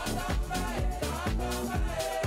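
A dance track played through a DJ mixer: a steady four-on-the-floor kick drum about twice a second under a deep bassline and melodic chords, in an upbeat house and disco style.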